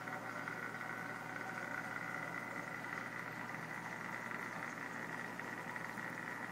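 Steady hum and running-water noise of a reef aquarium's pumps and circulation, with a faint constant whine above it.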